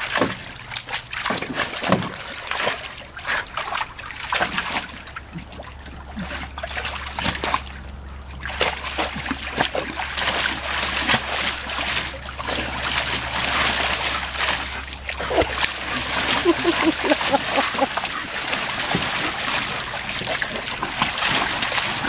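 A dog splashing and stomping in the water of a plastic kiddie pool. The splashing comes in short spells at first, pauses briefly, then goes on more steadily and louder from about nine seconds in.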